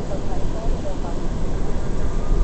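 Steady low rumble of an R179 subway car running on the track, heard from inside the car, with indistinct voices.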